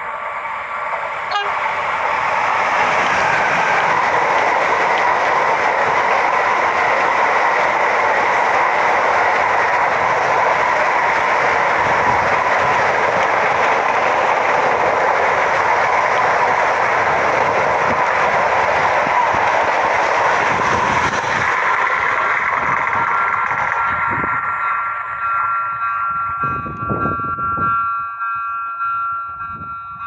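A Renfe class 253 (Bombardier Traxx) electric freight train passes close by at speed, its long rake of empty car-carrier wagons making a loud, steady rush of wheels on rail. For the last few seconds the rush thins out and several steady tones sound together.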